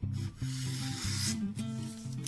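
A freshly sharpened kitchen knife slicing down through a hanging strip of newspaper to test the edge: one long papery hiss through the first second and a half. Background music plays underneath.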